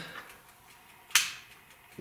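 One sharp click about a second in: a switch on the 1989 Wheel Horse 520-H garden tractor being turned on to light the new LED headlights, with the engine not running. Otherwise faint room tone.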